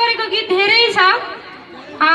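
Speech only: a high-pitched voice speaking in quick bursts, falling quiet about a second and a half in.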